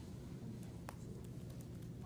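Quiet room tone with a steady low hum, scattered faint ticks and one sharper click about a second in.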